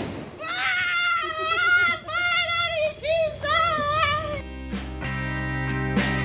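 A high, wavering voice-like sound drawn out in four long phrases with short breaks between them. About four and a half seconds in, plucked guitar music starts and runs on.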